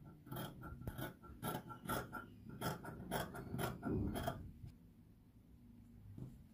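Scissors cutting through folded crepe-viscose fabric: a run of snips, about two or three a second, that stops about four seconds in.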